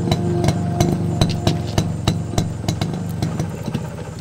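Motorcycle engine idling steadily, with a run of sharp clicks about three to four a second over it.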